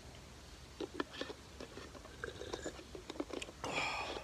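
Faint sipping from a mug of hot tea: scattered small mouth clicks, then a short breathy rush near the end.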